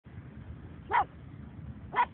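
Pug barking: two short barks about a second apart, the second at the very end, over a low steady rumble.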